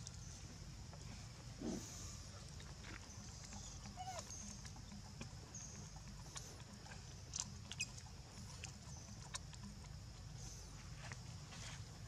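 Quiet outdoor ambience: a steady low hum and a high hiss, with scattered small clicks and rustles and a few brief faint chirps.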